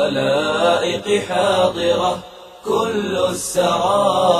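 An Arabic nasheed, a devotional chant sung in long melodic phrases with a short pause a little over two seconds in.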